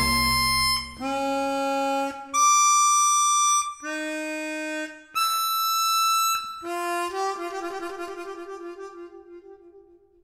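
Solo harmonica in a classical concerto: a full orchestral chord breaks off about a second in, and the harmonica plays four held notes separated by short gaps. It ends on a fluttering note that dies away to nothing.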